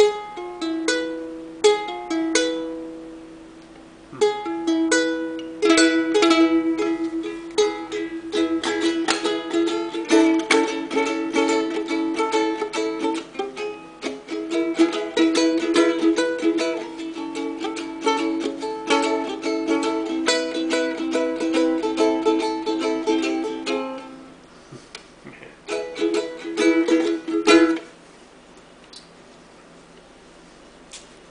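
Kamaka ukulele being strummed: a few separate chords ringing out, then steady strumming for about twenty seconds. After a short pause come a few more strums, and the playing stops a couple of seconds before the end.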